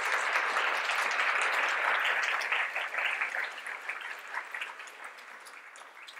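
Audience applauding, loud at first and dying away gradually over the last few seconds.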